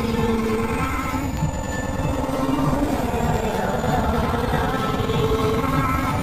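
Oreo commercial soundtrack run through heavy audio effects: a dense, distorted buzz of processed music, with a held low note during the first second.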